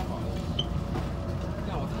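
Low, steady rumble of a Puyuma Express electric multiple unit heard from inside the passenger car as it rolls slowly along the platform, pulling into the station. Passengers talk faintly over it.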